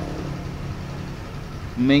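A steady low hum with a few held pitches, like a motor running in the background, fading slowly. A voice starts a word near the end.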